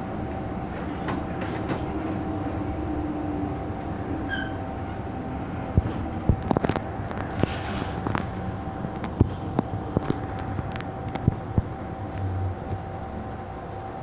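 MTR M-Train running through a tunnel, heard from inside the car: a steady running rumble with a steady motor tone. Around the middle there is a string of sharp, irregular clicks and knocks from the wheels on the track, and the sound eases near the end as the train slows into the station.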